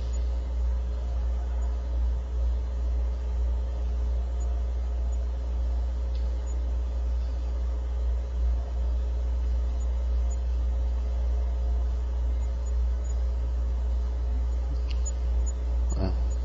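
Steady low hum and rumble of background noise, with a couple of faint clicks.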